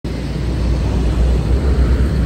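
Steady motor-vehicle noise on a highway: a low, constant engine rumble under a broad hiss.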